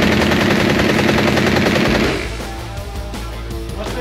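MAT-49 open-bolt 9mm submachine gun firing one long full-auto burst that stops about two seconds in, emptying the magazine, inside an indoor shooting range.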